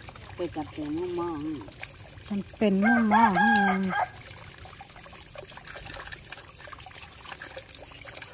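Water running from an open pipe spout and splashing onto the ground and over hands being washed under it, a faint steady trickle. In the first half a voice is heard, the loudest part a long call about three seconds in.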